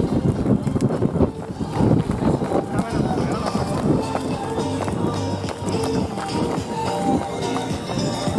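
Running footsteps of a firefighter in boots and breathing apparatus, with voices shouting. Music with steady held notes becomes prominent about halfway through.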